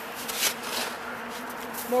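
A spade digging into snow, with a few short crunching scrapes, over a steady low hum.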